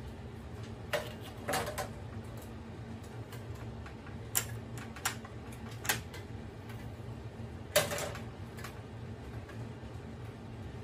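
Plastic parts of a Daikin wall-mounted air conditioner's indoor unit being handled during disassembly: a handful of sharp clicks and knocks at irregular intervals, the loudest about eight seconds in, over a steady low hum.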